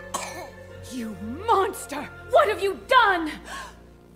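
A baby crying in the cartoon soundtrack: several short rising-and-falling wails over sustained background music.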